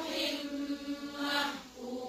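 A single voice chanting Qur'anic recitation with tajweed, holding one long drawn-out note that fades about one and a half seconds in, then starting the next held note.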